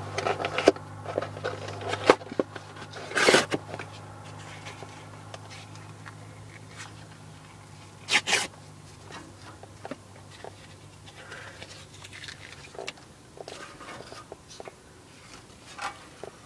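Cardboard and paper rustling and scraping as they are stuffed by hand into the firebox of a small marine wood stove, with scattered light knocks and two louder crinkling bursts, about three and eight seconds in. A low hum in the background stops about three-quarters of the way through.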